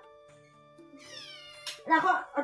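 A short, high cry that falls in pitch, about a second in, over soft steady background music, followed by a sharp click just before speech resumes.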